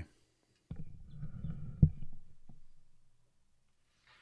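Low rumbling handling noise as a trumpet is lifted and brought up to the lips, with one sharp click a little under two seconds in. The noise dies away by about three seconds.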